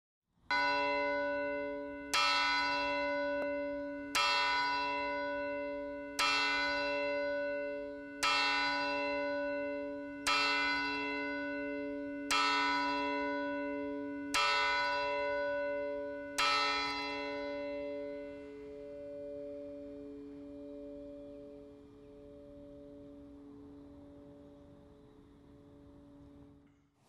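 A single church bell tolling, struck nine times about two seconds apart at the same pitch, each stroke ringing on into the next; after the last stroke its hum slowly dies away.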